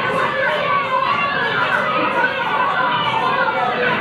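A gang of boys shouting and yelling over one another on a 1940s film soundtrack, played back in a hall.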